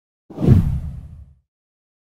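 A single whoosh sound effect with a deep low rumble, starting about a third of a second in, swelling quickly and dying away within about a second.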